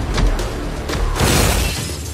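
Trailer music with a deep bass bed, cut by a loud crash of shattering glass about a second in, a half-second spray of bright, high noise.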